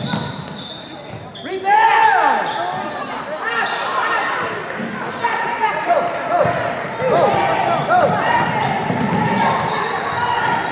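Basketball game sounds on a gym floor: a basketball being dribbled and sneakers squeaking on the hardwood, repeatedly from about two seconds in, with shouting voices mixed in.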